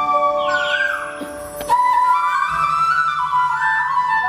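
Instrumental stage music: a high, flute-like melody with quick falling runs over held keyboard chords.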